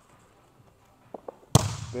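A single sharp slap of a hand striking a volleyball on the serve, about one and a half seconds in, ringing briefly in the gym. Two faint taps come just before it.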